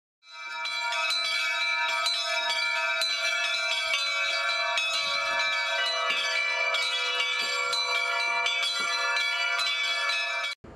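Several metal temple bells ringing over and over, struck a few times a second so their tones overlap into one continuous ringing. It fades in over the first second.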